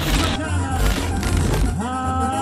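Mexican banda music playing: a heavy, steady bass line under brass and percussion hits.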